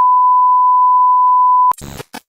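Loud steady 1 kHz test-tone beep, the sound of a TV colour-bars test card. It cuts off suddenly and gives way to a short crackle of static-like glitch noise.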